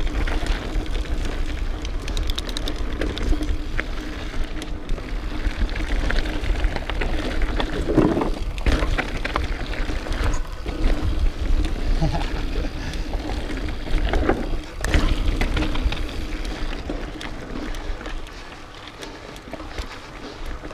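Mountain bike descending rocky dirt singletrack: wind on the camera microphone, tyres crunching over dirt and stones, and the bike rattling, with heavier knocks about eight seconds in and again near fifteen seconds.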